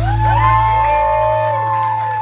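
The final chord of a live rock band ringing out, its low bass dropping away about two-thirds of the way through, while the audience whoops and cheers over it.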